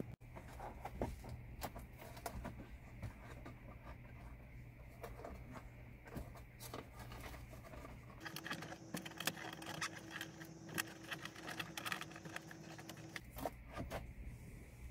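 Faint scattered clicks and rustles of hands working a worn foam liner out of a Honda Ridgeline's plastic cupholder.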